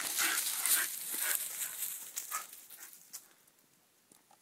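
A Shiba Inu making short whining, huffing sounds, loudest in the first two seconds and fading out by about three and a half seconds in.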